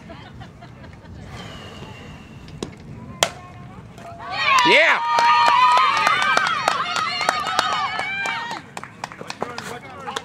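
The ping of a softball bat hitting the ball about three seconds in, with a brief ring after it. About a second later, spectators break into loud yelling and cheering for several seconds as the ball is put in play and runners score.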